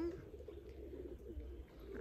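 Domestic pigeons cooing in a flock, faint and overlapping, over a low rumble.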